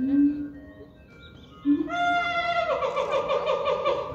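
A voice: a brief low call at the start, then a loud, high-pitched sustained voice from about two seconds in that wavers rapidly in its second half.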